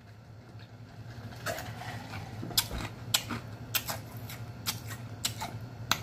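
A man gulping ice water from a large glass jar: a run of quick, clicky swallows about two a second, starting about a second and a half in.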